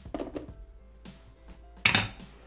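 Light background music, with handling noises as the plastic Thermomix simmering basket is lifted off the lid early on, and one sharp clatter of the basket near the end.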